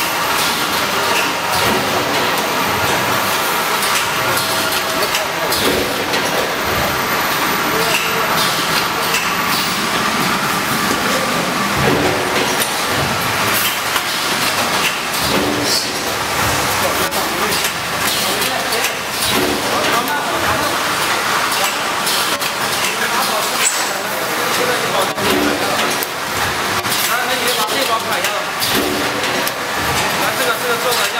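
Packaging machinery running on a factory floor: a steady mechanical din with many rapid clicks and clatters, with people's voices mixed in.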